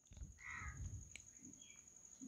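A bird calling faintly in the background, one short call about half a second in and a brief higher note later, over low room noise and a thin steady high-pitched whine.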